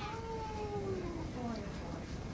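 A single drawn-out voice sound, about a second and a half long, whose pitch falls steadily from high to low.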